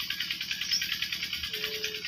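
Insects chirring steadily: a high-pitched, rapidly pulsing drone that carries on without a break.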